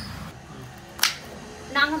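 A single sharp click about a second in: a kitchen knife striking a wooden cutting board while slicing shallots.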